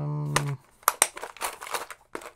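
A drawn-out spoken "uh" ends about half a second in. A quick run of sharp plastic clicks and snaps follows as a small clear plastic tackle box is snapped shut by its latch, its hinge giving way.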